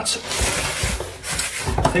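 Packaging rustling and scraping as hands rummage inside a cardboard box, rubbing against foam packing blocks and the plastic bag around the inverter, loudest in the first second.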